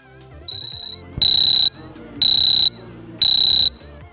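Timer app's alarm sound file played when the countdown reaches zero: three loud high-pitched beeps about half a second long, one a second, with a softer beep just before them.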